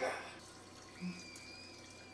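A girl screaming on one high, steady pitch, faint, starting about a second in and held.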